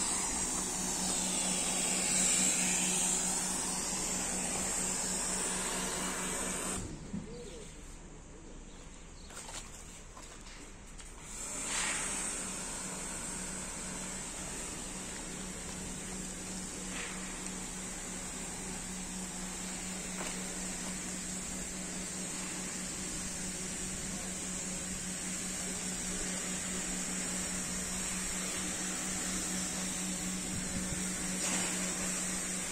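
Pressure washer running steadily, its motor and pump humming under the hiss of the spray. It stops for about four seconds a quarter of the way in, then starts again.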